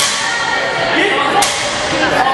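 Sharp, echoing cracks of gym equipment striking the floor, one at the start and another about a second and a half later, over the shouting of a crowd of athletes, judges and spectators.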